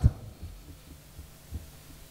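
A pause in speech over an open microphone: a low rumble with a few soft thuds, one about one and a half seconds in.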